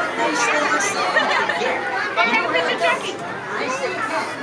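Many voices talking at once: the overlapping chatter of a party crowd, no single speaker clear.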